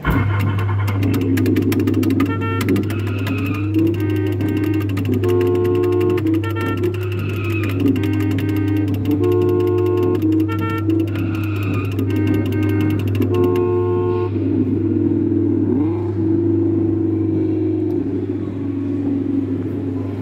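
Car kiddie ride running: its speaker plays upbeat electronic music with a fast beat and chiming chords, mixed with car engine-revving sound effects, over a steady low hum. Everything starts abruptly as the ride begins, and the beat drops out about two-thirds of the way through.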